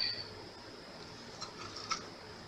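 Faint light clicks of a stirrer scraping and tapping thick resin out of a small plastic mixing cup, a few small ticks near the end over quiet room tone. A louder sound before it dies away in the first moment.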